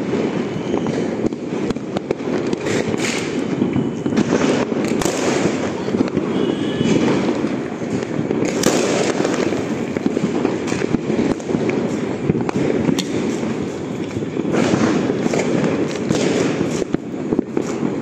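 Many firecrackers and fireworks bursting at once, a dense, continuous popping and crackling with no gaps. One sharper crack stands out about nine seconds in.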